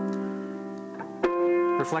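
Piano chords played by hand: a chord struck just before rings and slowly fades, then a second chord is struck a little over a second in. The chords demonstrate the notes F and C held as steady pillars against changing harmony.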